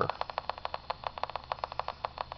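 Electrostatic motor's charge-and-discharge pulses across its rotor, picked up by a portable radio as a fast, even train of sharp static clicks, more than ten a second.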